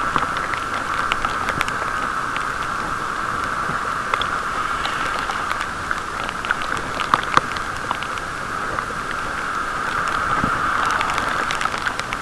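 Rain hitting a waterproof camera case: scattered sharp taps of raindrops over a steady, muffled hiss of riding on a wet road, all heard through the sealed housing.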